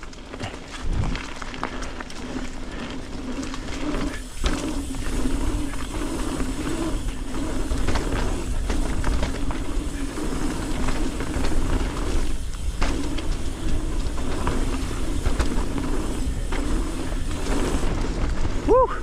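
Mountain bike ridden fast down a dirt forest trail: tyres rolling and the bike rattling over the ground, getting louder over the first few seconds as speed builds, with wind buffeting the microphone as a constant low rumble.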